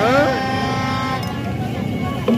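Horns blowing a steady tone over busy street noise, cutting off about a second in, with a short voice calling out at the start.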